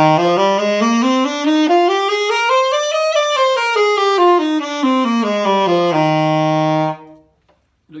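Alto saxophone playing a C major scale over two octaves, stepping up note by note and back down at about five notes a second, ending on a held low note.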